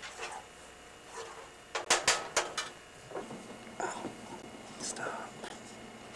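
A few sharp clacks of kitchen utensils about two seconds in, among faint low voices in a small kitchen.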